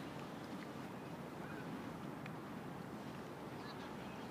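Faint outdoor ambience by a pond: a low, steady murmur with a few faint, brief higher sounds scattered through it.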